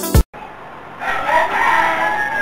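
Music cuts off just after the start. About a second later a rooster crows once, a single long call that rises and then falls in pitch.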